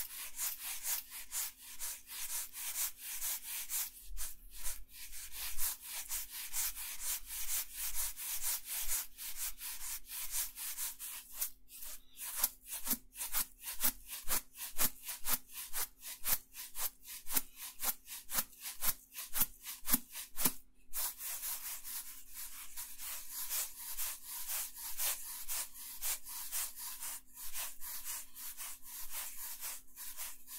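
Sand shaken back and forth inside a small plastic bottle close to the microphone: rhythmic hissing swishes, about two to three a second, with sharper, harder strokes through the middle stretch.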